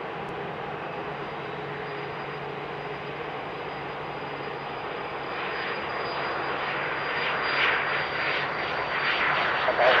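Cessna Citation CJ3's twin Williams FJ44 turbofans at takeoff power as the jet accelerates down the runway: a steady rushing jet noise with a thin high whine, growing louder through the second half.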